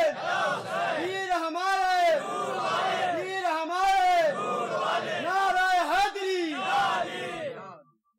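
A crowd of voices chanting a phrase in unison, repeated about every second or so, each call rising and falling in pitch. The chanting cuts off abruptly just before the end.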